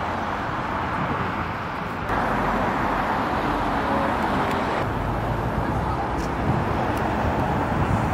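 Steady outdoor noise of road traffic. It jumps up abruptly about two seconds in and changes again near five seconds.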